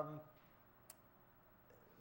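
One short button click about a second in, against near-silent room tone, as the presentation controls are worked.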